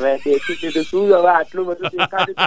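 A man laughing loudly: a long, high wavering laugh, then, near the end, quick rhythmic 'ha-ha-ha' pulses of about five a second.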